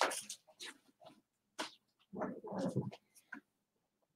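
Faint, scattered clicks and rustles of items being picked up and handled. Partway through there is a short, low vocal sound.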